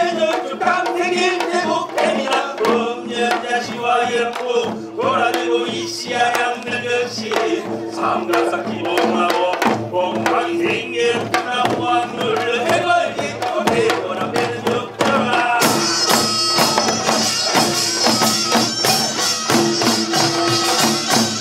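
Korean traditional pungmul music: a held, bending melody over dense janggu and buk drumming. About three-quarters of the way through, a bright metallic clatter joins the drums.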